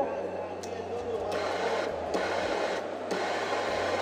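Steady background noise with a low hum and faint voices in the background; no distinct sound of the torch stands out.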